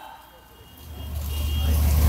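A low rumble that swells steadily over about a second and a half, with a faint high beep briefly in the middle.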